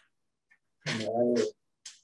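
A single short animal call, about half a second long, about a second in.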